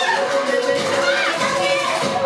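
A dance track playing loud over the sound system, with the audience shrieking and cheering over it in high, sliding cries.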